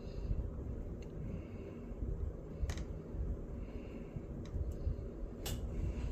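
Light handling noise from a laptop blower fan's plastic housing being picked at and set down: a few soft clicks, the clearest about midway and near the end, over a low steady room rumble.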